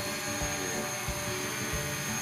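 DJI Mavic Pro quadcopter hovering, its propellers giving a steady hum of several tones with a thin high whine, and soft low thumps every half second or so.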